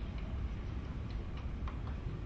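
A few faint, scattered clicks over a steady low hum.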